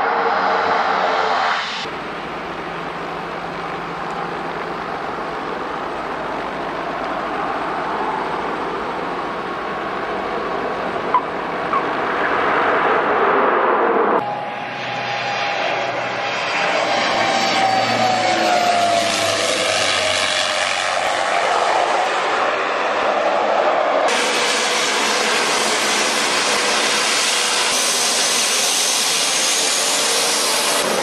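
Twin-engine turboprop planes landing, their engine and propeller noise changing abruptly twice, with one tone falling in pitch as a plane passes about midway. From about 24 seconds in, a twin turboprop runs at takeoff power, with more high-pitched hiss.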